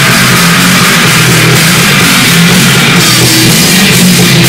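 Live punk rock band playing loudly: electric guitar and bass guitar over a drum kit, steady throughout.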